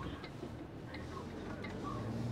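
Inside a truck cab, the low hum of the Iveco's diesel engine with a faint regular ticking, typical of the indicator.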